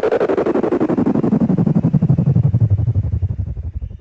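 UK hardcore dance track's closing effect: a rapid pulsing synth sound sweeping steadily down in pitch from high to low, like a wind-down, then starting to fade about three seconds in.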